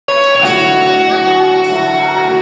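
Live rock band playing, with electric guitars ringing out sustained chords over bass and drum kit. Two sharp drum-kit accents come about half a second in and near the end.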